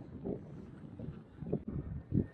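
Wind on the microphone and choppy water lapping against a kayak hull, in irregular low swells.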